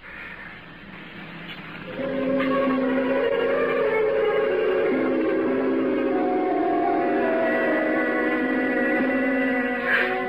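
A musical bridge between radio-drama scenes: it begins soft and swells up about two seconds in, then holds sustained chords whose notes shift slowly.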